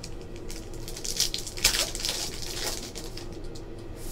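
Foil trading-card pack wrapper crinkling and tearing as it is opened by hand, a crisp rustle lasting about two seconds in the middle, over a faint steady room hum.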